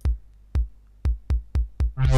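Sampled electronic kick drum from a groovebox step sequencer playing a short pattern of six kicks. The first three come about half a second apart, then three quicker ones about a quarter second apart.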